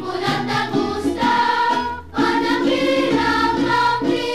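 Background music: a song with voices singing together.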